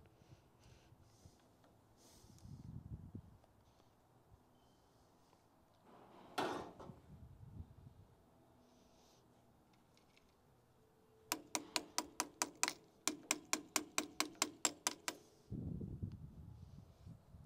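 A ratchet wrench clicking in two quick runs near the end, about six clicks a second, as a battery terminal clamp is tightened onto the battery post. A single metallic clank comes about six seconds in.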